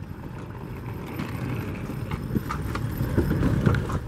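Wheeled suitcases rolling over asphalt, a low rumble with a few sharp clicks and clacks, mixed with footsteps.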